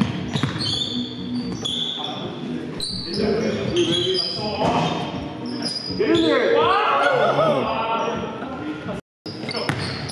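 Basketball game in a gym: a ball dribbling on the hardwood, sneakers squeaking and players calling out, echoing in the large hall. The sound cuts out briefly near the end.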